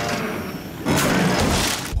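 Cartoon sound effect of a mechanical rescue claw closing on a boat: a noisy crunching crash lasting about a second, starting about a second in.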